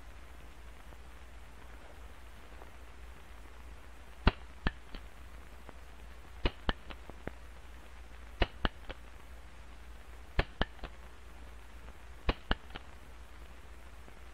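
Revolver hammer being thumb-cocked and snapped over and over, a quick group of three or four sharp metallic clicks about every two seconds, five groups in all. Each group is the hammer cocking and the cylinder turning, then the hammer dropping.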